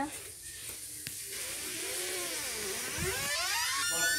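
A long wavering cry that swoops slowly up and down in pitch, starting a little over a second in.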